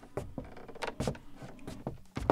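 Footsteps on wooden bridge planks: a series of short, irregular knocks.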